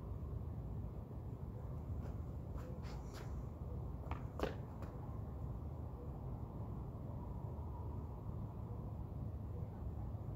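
Steady low rumble of outdoor background noise, with a few faint clicks and taps around the middle.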